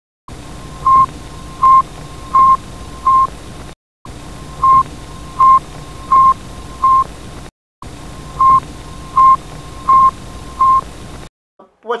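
Recording of the Sputnik 1 satellite's radio telemetry beacon: a steady static hiss with short, high beeps at one pitch, four beeps at a time about 0.7 s apart. The same four-beep stretch plays three times, with a brief silence between each pass.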